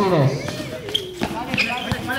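A basketball being dribbled on a hard court: three bounces, evenly spaced about two-thirds of a second apart.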